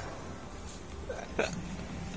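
Quiet workshop background with a low steady hum, broken once about one and a half seconds in by a single short, sharp sound.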